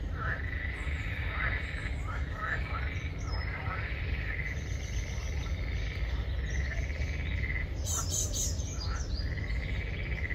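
A chorus of frogs calling: repeated trills of a second or two each near the same pitch, with a few short chirps, over a low steady rumble. A brief sharp sound cuts in about eight seconds in.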